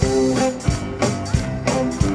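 Live band playing an instrumental stretch: a drum kit keeps an even beat of about three strokes a second under held guitar and keyboard chords.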